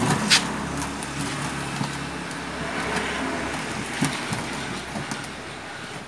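A motor vehicle passing by, its noise swelling to its loudest around the middle and then fading, with a sharp click just after the start.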